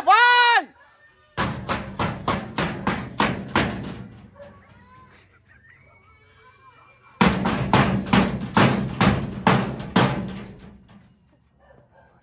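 Rapid pounding on a gate, about three or four blows a second, in two bouts a few seconds apart. A short loud cry, rising then falling in pitch, comes just before the first bout.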